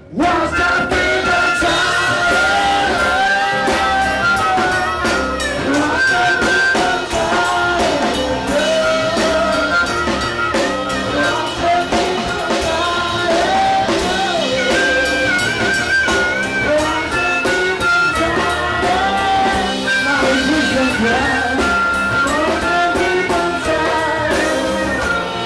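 Live blues-rock band playing an instrumental passage: strummed acoustic guitar and a drum kit with steady cymbal hits under a wailing, bending lead line from a harmonica played into a cupped microphone.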